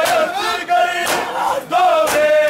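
Crowd of men chanting an Urdu noha (Shia mourning lament) in unison, with chest-beating (matam) slaps about once a second, twice here.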